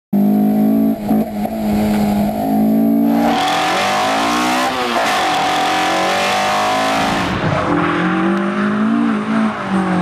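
Toyota AE86 engine revving hard, its pitch climbing and dropping again and again. A loud hiss joins in about three seconds in and fades out near seven seconds.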